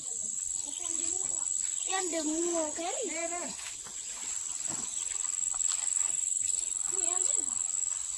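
A steady high-pitched insect buzz runs throughout, with people's voices talking over it, clearest between about two and three and a half seconds in.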